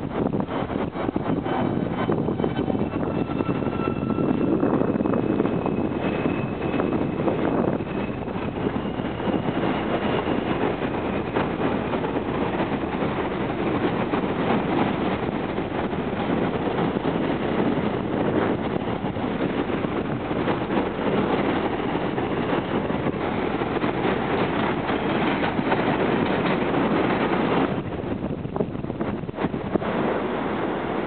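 An R160A subway train on an elevated line pulling out: a steady rumble of wheels on rail, with a few short high whining tones from its motors in the first ten seconds. Wind buffets the microphone. The rumble drops away near the end.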